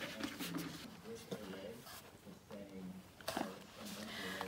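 A cardboard doll box being opened by hand: light rustling and handling, with a short sharp scrape a little over three seconds in. A soft voice murmurs faintly underneath.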